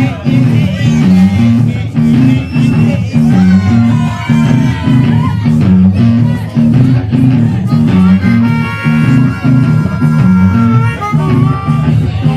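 Live band playing a blues-rock riff: bass and electric guitar repeat a low riff over and over, while a harmonica plays bending lines and then holds a chord near the end.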